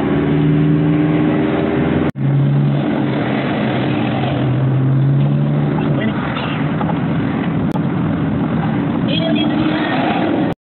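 Engine drone and road noise inside a moving vehicle's cabin, with a steady low hum from the engine. The sound drops out for an instant about two seconds in.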